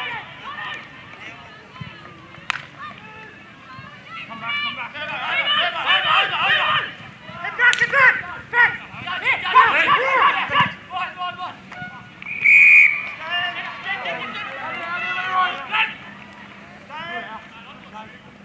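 Players and spectators shouting calls across an Australian rules football ground, loudest in the middle of the stretch, with a short, high whistle blast about twelve and a half seconds in.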